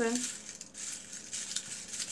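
Small folded paper slips rustling as a hand stirs them around in a bowl, a continuous crackle of many small rustles.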